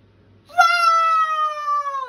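A woman's voice sustaining one long, high note, starting about half a second in: the word "roars" drawn out in a singing voice, its pitch drifting down and then sliding steeply lower at the end.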